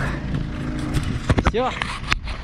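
A motor vehicle engine idling with a low, steady hum that fades about a second in, followed by a few sharp clicks.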